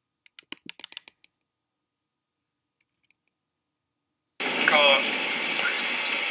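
A few faint clicks, like a computer mouse or keyboard, in the first second. Then, four and a half seconds in, the soundtrack of an amateur lightning-storm video starts abruptly: a loud steady rushing noise with a person's voice in it.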